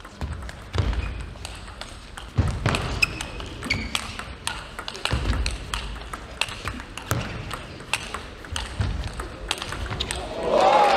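Table tennis rally: the plastic ball clicks in quick succession off rubber-faced bats and the table. Several dull low thumps, about every two seconds, come from the players' feet landing on the court floor as they move.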